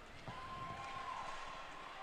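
Faint ice-rink ambience: a low background murmur from the surrounding crowd, with a faint held tone that starts about a third of a second in and lasts about a second.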